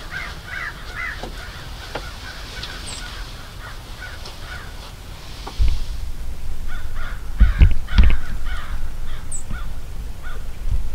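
Crows cawing repeatedly in the distance. About halfway through, a low rumble sets in on the microphone, with a few loud low thumps a couple of seconds later.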